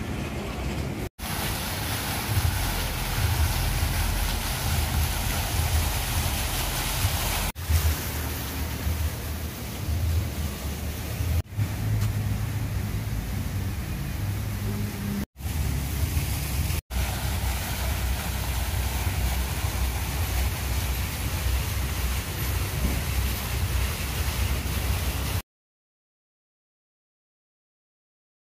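Steady outdoor ambient noise with a heavy, uneven low rumble, typical of open-air street ambience picked up by a handheld camera. It is broken by several short dropouts where shots are cut, and it stops abruptly just before the end.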